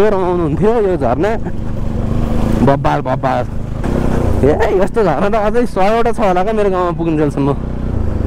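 A voice singing a wavering melody with long, quivering held notes, over the steady running of a Bajaj Pulsar NS 200's single-cylinder engine.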